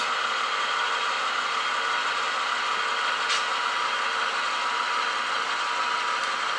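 HO scale model freight train rolling past close by on layout track: a steady whirring rumble of the wheels and running gear.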